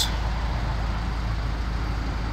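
The MINI Cooper S's 1.6-litre turbo four-cylinder idling, a steady low rumble heard inside the cabin.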